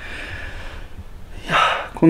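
A man breathing close to the microphone between phrases: faint breath at first, then a short, audible intake of breath about one and a half seconds in.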